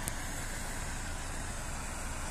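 Ford Focus 1.8-litre petrol four-cylinder engine idling steadily, heard from behind the car.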